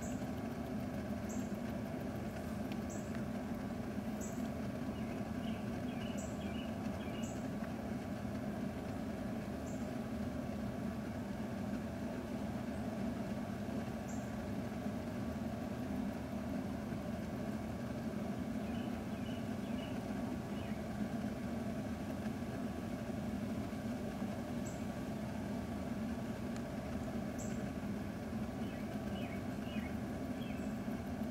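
A steady low mechanical hum, like a distant engine or machine, with faint short high chirps every second or two.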